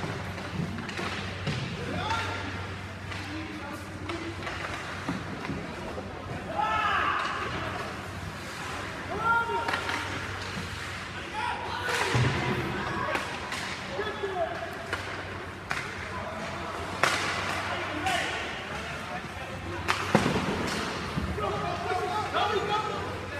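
Ice hockey rink sound from the stands: indistinct voices and calls, with sharp knocks every few seconds of puck and sticks against the boards and ice, over a steady low hum.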